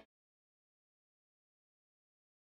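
Silence: no sound at all, a digital gap in the soundtrack.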